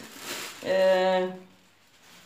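A woman's held hesitation sound, a steady "uh" of under a second, in the middle of a sentence, after a brief rustle.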